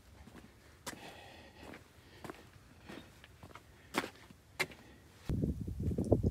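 Footsteps on bare rock and gravel: a few scattered scuffs and steps over a faint background. A louder, uneven low rumble comes in near the end.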